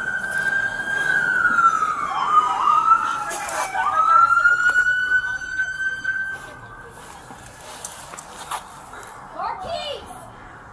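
Police car siren wailing in slow rising and falling sweeps, with a couple of quick dips in pitch. It is loud for the first six seconds or so, then fades away.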